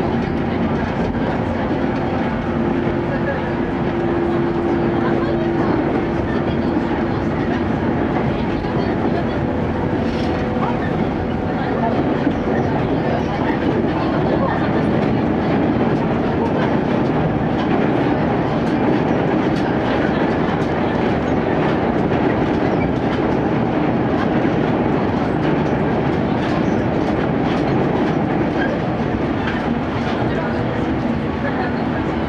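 A JR West Series 115 electric train running along the track, heard from inside a passenger car: a steady rumble of wheels on rail. A humming tone runs through the first several seconds.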